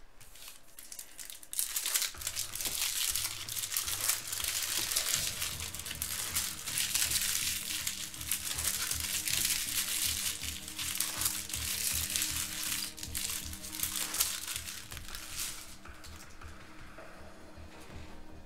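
Foil trading-card pack wrappers crinkling as packs are torn open and the cards handled, starting about a second and a half in and dying down near the end, with faint background music underneath.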